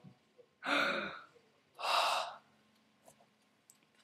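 A person's breath: two audible sighs or exhalations close to the microphone, about a second apart.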